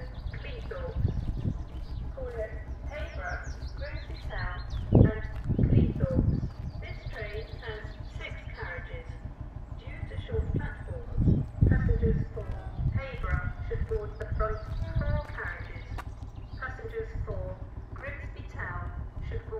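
A person's voice talking on and off, with low gusts of wind buffeting the microphone, strongest about five and eleven seconds in.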